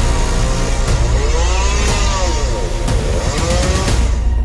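STIHL two-stroke chainsaw cutting through a tree trunk, its engine pitch rising and falling again and again. Background music plays underneath.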